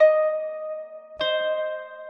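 Celtic harp playing the closing notes of a song: two plucked notes about a second apart, the second left to ring out and fade.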